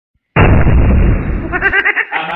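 A sudden, very loud boom starting about a third of a second in, rumbling for about a second before fading, with a man's voice starting near the end.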